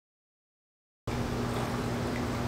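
Dead silence for about a second, then a steady hum with a low drone starts abruptly and runs on evenly.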